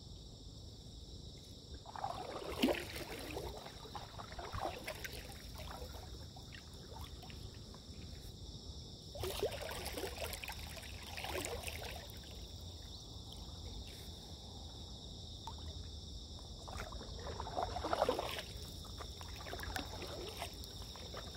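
Stand-up paddleboard paddle strokes: the blade dipping and pulling through calm water, splashing in three bursts several seconds apart. A steady high drone of insects runs underneath.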